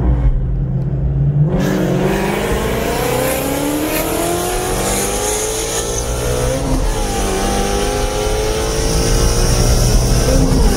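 Car engine at full throttle, picking up sharply about a second and a half in and rising steadily in pitch, with a brief drop at a gear shift near seven seconds before it climbs again. Rushing wind and road noise come in with it.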